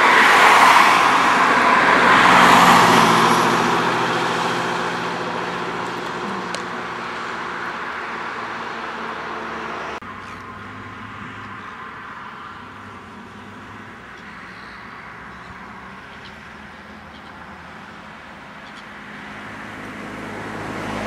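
Road traffic: a vehicle passes close by in the first few seconds and fades away. After an abrupt cut about halfway, a quieter, steady traffic noise.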